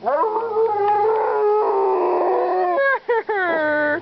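Siberian husky's weird howl: one long drawn-out call that rises at the start, holds, and sinks slowly, then after a short break a second, shorter call that falls in pitch.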